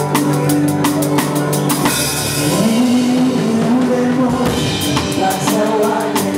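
Live band playing an instrumental passage: drum kit keeping a steady beat over bass and sustained chords. Around the middle the drum hits thin out under a cymbal wash while the bass slides up, and the beat picks up again near the end.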